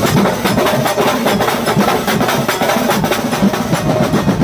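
A large drum ensemble playing a loud, fast rhythm together, with many strokes a second on big barrel drums and smaller snare-type drums, with cymbals.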